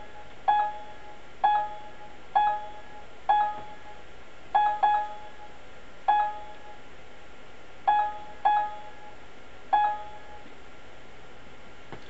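Short electronic beeps from the PC-DMIS measuring software on the computer, about ten at uneven intervals, each marking a probe hit as the simulated CMM probe measures features of the part.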